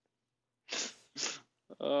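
Two short, sharp bursts of breath from a person, about half a second apart, followed by a man starting to speak near the end.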